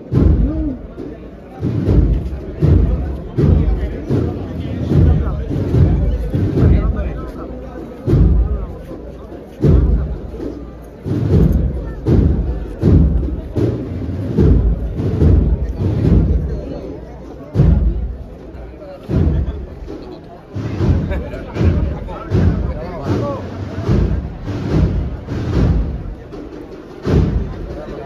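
Processional marching band (agrupación musical) playing a march, its bass drum beating steadily about one and a half times a second under a murmur of crowd voices.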